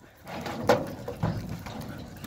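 Cattle hooves and herding dogs scuffling in loose dirt as the dogs heel the cows, with a sharp knock about two-thirds of a second in.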